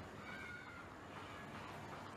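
A faint, short animal call lasting about half a second, over a steady background hiss.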